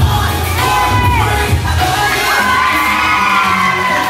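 Loud dance music with a heavy beat under a crowd cheering and whooping for dancers, with hand-clapping; the beat drops out about halfway through while long high-pitched cheers carry on.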